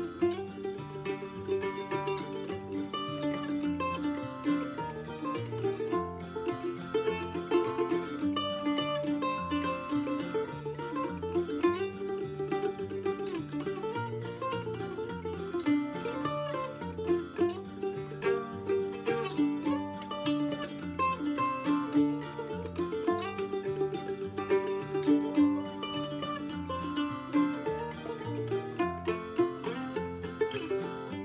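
Weber F-style mandolin played solo, picking a bluegrass instrumental tune as a continuous run of quick single notes.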